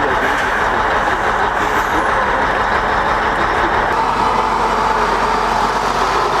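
Heavy truck engine running steadily, a loud even noise without breaks.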